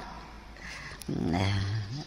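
A man's low, drawn-out vocal hum lasting under a second, starting about halfway through, between bursts of speech.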